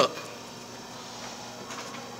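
Faint steady background noise with a few soft ticks.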